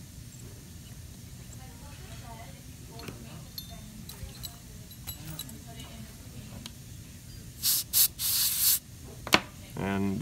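Dental air syringe blowing two short puffs and then a longer blast of air, a little past two-thirds of the way through, clearing loose amalgam particles off the freshly carved filling. A single sharp click follows just after.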